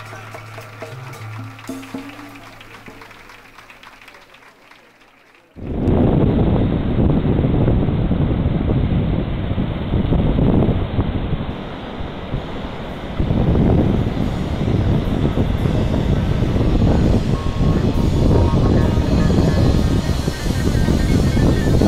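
A music track fades out over the first five seconds, then the sound cuts abruptly to a loud, steady rush of wind on the microphone and surf on the beach, swelling and dipping.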